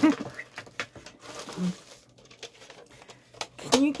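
Plastic rustling and scattered light clicks as a white plastic baby bottle drying rack is pulled out from among plastic-wrapped packages and handled. A short voice sound comes at the start, and speech begins near the end.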